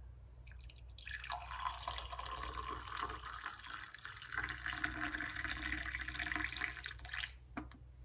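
Hot tea poured through a metal tea strainer into a ceramic mug: a steady stream of liquid splashing, starting about half a second in and stopping shortly before the end.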